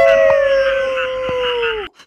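A jackal howling: one long held call that falls away and stops near the end.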